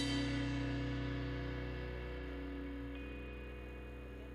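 Final chord of a rock song on electric guitars and bass left ringing through the amplifiers, held steady and slowly fading out.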